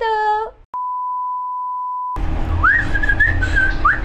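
A woman's drawn-out spoken farewell ends, then a single steady electronic beep holds for about a second and a half and stops abruptly. After a cut, a woman whistles a few short rising and held notes over a low hum.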